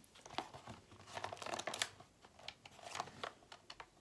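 Small cardboard toy box being handled and opened: light crinkling and tearing noises in several short clusters, with scissors cutting into the cardboard near the end.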